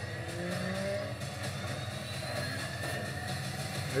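Car engine in a film trailer's sound mix, running steadily with a slight rise in pitch about half a second in.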